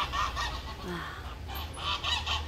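Domestic waterfowl on a farm calling, three separate calls: one at the start, one about a second in, and one near the end.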